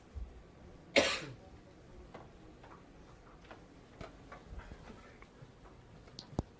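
A single cough about a second in, then quiet room tone with a few faint clicks.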